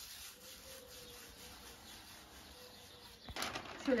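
Soft rustle of dried herb leaves being rubbed and crumbled between the hands. About three seconds in, a much louder crackling rustle as a large sheet of stiff paper is picked up and shaken.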